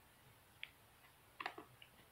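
Near silence: room tone with a few faint clicks, one about a third of the way in and two close together near the end.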